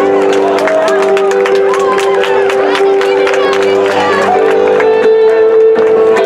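A live band holding sustained keyboard chords whose notes shift every second or two, over audience voices and scattered clapping.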